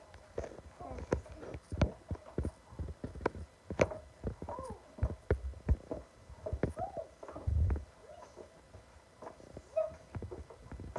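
Irregular knocks and clicks, several a second, with a duller thud about seven and a half seconds in and short squeaky pitched sounds between them: handling and movement noise from someone moving about in the dark.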